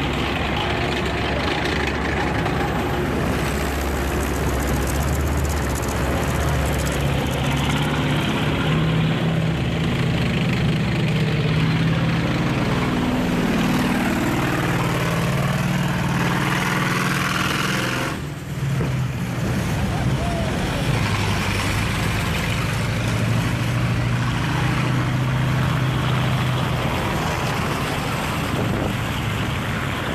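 Engines of WWII military vehicles, a Sherman tank, a half-track and a small tracked carrier, running steadily as they drive slowly past in a column, with a low engine note throughout. The sound drops briefly about 18 seconds in.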